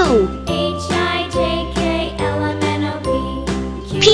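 Instrumental children's background music with a steady beat. A twinkling chime sound effect sweeps downward in pitch at the start, and again at the end, as a traced letter sparkles.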